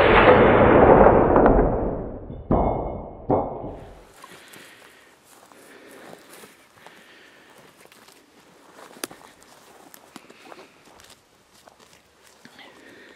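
A hunting rifle shot: one loud, sudden report that rolls away over about two seconds. Two more, weaker sharp bangs follow about two and a half and three seconds in, each dying away within a second, and then only faint rustling and footsteps in grass.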